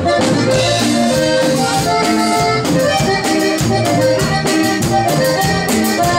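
Live norteño band playing an instrumental passage: an accordion melody over bajo sexto strumming and a steady drum beat.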